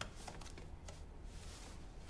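Faint rustling of clothing being handled, in a few short, soft strokes.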